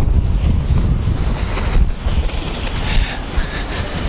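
Wind buffeting the microphone: a loud, uneven low rumble that rises and falls with the gusts.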